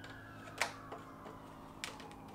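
Two light clicks of PVC pipe knocking against PVC T fittings, about a second and a quarter apart, over a low steady hum.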